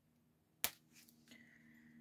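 A single sharp click about half a second in, as the tag is taken off a baby outfit, followed by faint low handling noise.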